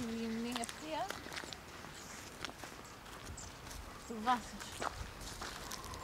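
Footsteps on dry, stony dirt and grass: irregular light scuffs and clicks as someone walks.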